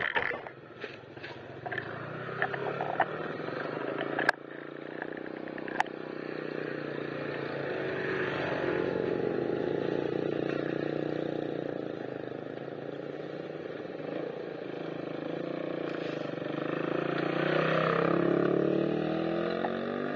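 Motor vehicles passing along the road. One engine grows louder to about ten seconds in and then fades, and a car comes close near the end with a sweeping whoosh as it goes by. A few sharp clicks and knocks are heard in the first six seconds.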